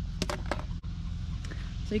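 Handling noise on a handheld camera's microphone as it is moved: a few sharp clicks and knocks over a steady low rumble, with a word of speech starting at the very end.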